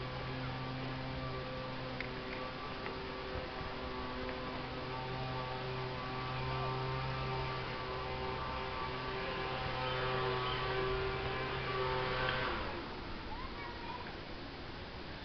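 A steady low hum with a stack of even overtones, holding one pitch, that cuts out about twelve seconds in.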